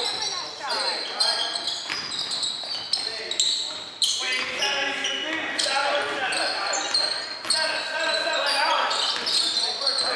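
Basketball dribbled and bouncing on a hardwood gym floor, with sneakers squeaking and players' voices calling out, all echoing in a large gym.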